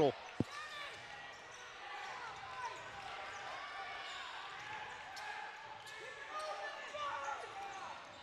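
Basketball gym sounds during live play: coaches and players shouting instructions, heard faintly in the hall, over a ball being dribbled on the hardwood court. A single knock comes about half a second in.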